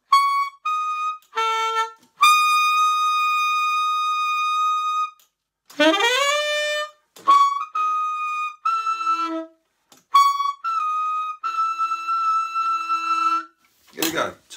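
Lineage tenor saxophone played high in its top register: a few short notes, a long held high note, an upward slide about six seconds in, then more short notes and another long held high note near the end. The top notes come out without strain.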